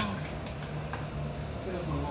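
Water running steadily down a metal flowing-noodle trough, an even hiss, over a steady low hum.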